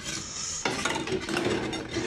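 Rough scraping and rubbing of food handling at the table, a continuous rasping noise with small scratchy clicks.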